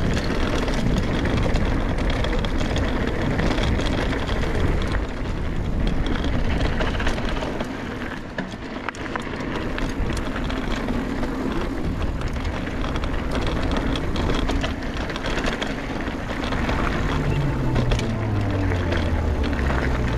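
Mountain bike descending a dirt and gravel trail: a steady rush of wind on the microphone with low rumble, and tyres crunching over loose dirt with small rattles and clicks from the bike. A low hum falls in pitch near the end.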